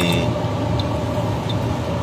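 Steady low rumble and hum of a car, heard from inside its cabin.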